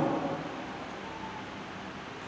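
A pause in a man's speech: steady hiss of room tone, with the tail of his voice fading out at the very start.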